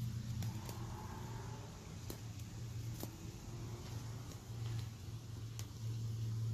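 A steady low mechanical hum, with a few faint clicks.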